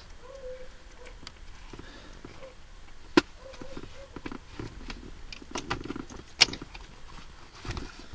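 Light handling knocks and rustles of plastic interior console trim, with two sharp clicks about three seconds apart.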